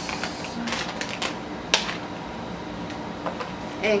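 A plastic dog-treat pouch crinkling as it is torn open by hand, with a few sharp rips and crackles; the loudest comes a little under two seconds in.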